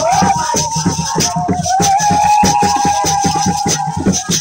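Live group music: a quick, even beat of percussion with rattles, and over it one long, wavering high note held almost through.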